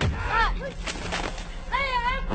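A sudden loud boom with a deep rumble under it, followed by a burst of noisy crackle, while high-pitched voices call out twice over it.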